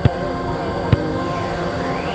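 Background music with steady held tones, and two sharp thuds about a second apart as a football is struck.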